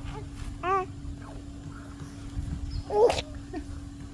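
Short voice-like sounds: a brief 'uh' about a second in, then a louder, sharper cry about three seconds in, over a steady low hum.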